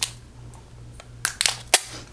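Clear Scotch tape being pulled from the roll and bitten through with the teeth: a few sharp crackles and snaps, the loudest near the end.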